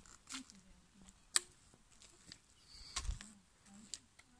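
A few scattered sharp clicks at irregular intervals, the loudest about one and a half seconds in, and a low thump about three seconds in, with a faint voice in the background.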